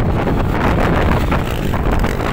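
Wind buffeting the microphone: a loud, gusty rushing rumble.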